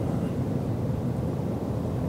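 Steady low rumble of road and wind noise inside the cab of a 2022 Chevrolet Silverado 1500 pickup cruising at highway speed with a boat trailer in tow.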